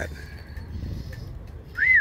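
A single clear whistled note, rising then falling in pitch, near the end, over low steady outdoor background noise.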